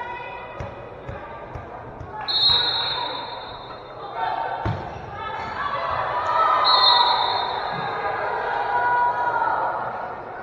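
Volleyball rally in a gymnasium: the ball is struck with sharp thuds, the loudest about halfway through, while players and spectators shout. Two high, steady squeals of about a second each come about two seconds in and again near seven seconds.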